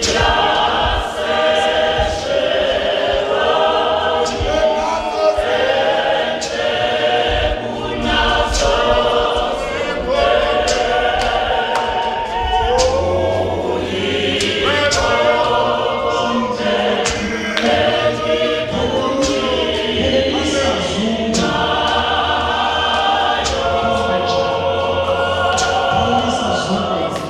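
A large mixed congregational choir of women's and men's voices singing an isiZulu Zionist gospel hymn in harmony, with a regular beat of sharp percussive strokes under the voices.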